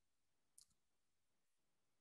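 Near silence, with one faint, short click about half a second in.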